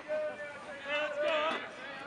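Men's voices calling out across a baseball field, with no clear words, louder about a second in.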